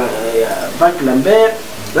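A man speaking, over a steady background hiss.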